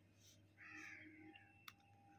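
Near silence: room tone, with one faint call of under a second about half a second in, and a light click near the end.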